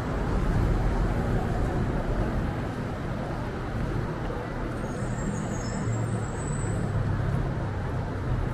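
Street traffic with a bus engine running close by, its low rumble growing in the second half. A brief high squeal comes about five seconds in.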